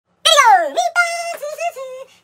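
A high-pitched vocal wail that slides steeply down in pitch about a quarter second in, then runs on as a string of short, wavering, sing-song syllables without clear words.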